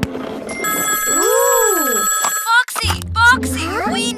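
Cartoon telephone ringing: a steady, high ring lasting about two seconds over background music. The phone goes quiet when it is answered, and a cartoon character's voice follows near the end.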